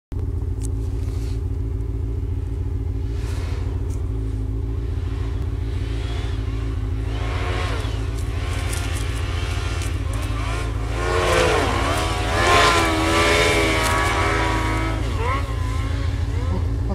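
Yamaha RX-1 snowmobile's four-stroke four-cylinder engine approaching through deep powder, growing louder from about six seconds in and revving up and down in pitch, loudest around twelve seconds in as it comes close. A steady low hum runs underneath throughout.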